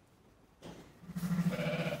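A sheep in the lambing pen gives one steady bleat, starting about a second in and lasting nearly a second.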